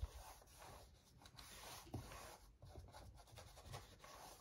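Faint, repeated swishes of a small paintbrush dragging thick paint across paper.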